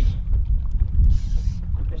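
Wind rumbling on the microphone, with a brief soft hiss about a second in.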